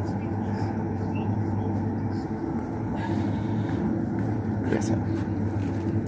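Supermarket room noise: a steady low hum with faint, indistinct background voices.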